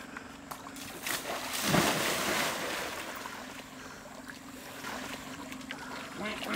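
A person in a wetsuit splashing into river water about two seconds in, followed by water sloshing and lapping around them as they float.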